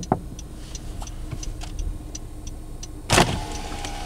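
Parked car's door and window mechanisms heard from inside the cabin: two quick clicks at the start and faint ticking about three times a second, then a loud clunk about three seconds in followed by a steady motor hum typical of a power window.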